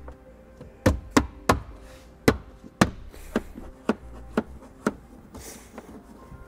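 Plastic rear scuff-panel trim being pressed down into place along the cargo-area sill: a run of about nine sharp clicks and knocks as its clips seat, spread over about four seconds.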